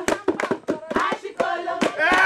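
A group singing with brisk, rhythmic hand clapping to accompany dancing.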